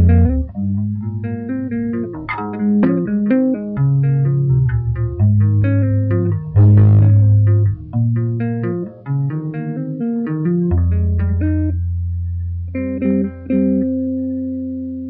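Solo two-handed tapping on a Warwick electric bass: a melodic line of quick notes over low bass notes. Near the end a low note is held and a higher chord is added, both left ringing.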